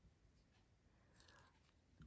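Near silence with faint rustling and small ticks of a fine steel crochet hook working cotton thread.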